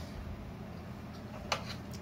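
Quiet room tone with a low steady hum, broken by a single short click about one and a half seconds in.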